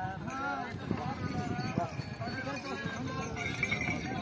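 Several men talking over one another around a pair of Khillar bulls being yoked, with scattered knocks and hoof stamps from the animals and the wooden yoke. A brief high steady tone comes in near the end.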